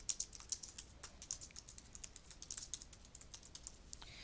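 Typing on a computer keyboard: a quick, irregular run of faint key clicks as a short phrase is typed.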